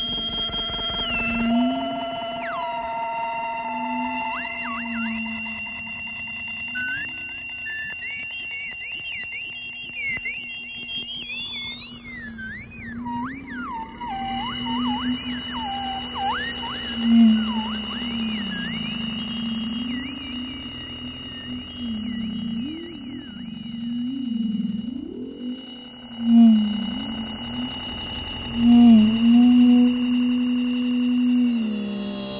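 Electronic music built from acoustic feedback (Larsen effect) howls and their modulations: steady high whistling tones and warbling tones sliding up and down over a low, wavering hum. About twelve seconds in, a group of high tones sweeps upward together, and near the end the low hum swells louder.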